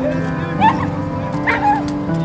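An injured stray dog cries out twice in short high calls, about half a second in and again near the end, while it is pinned by a catch pole and handled. Background music plays throughout.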